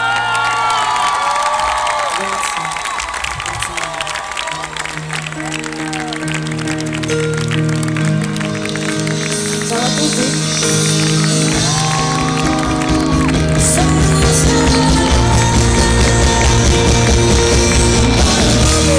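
Live band music building up from held keyboard chords, with the crowd cheering and whooping over the first couple of seconds. The music grows steadily louder, and bass and drums come in heavily in the last few seconds.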